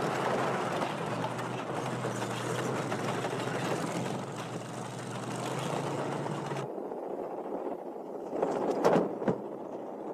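Tank engine running with a dense, noisy rumble and a steady low hum. The sound cuts off abruptly about two-thirds of the way through, and a few sharp knocks follow near the end.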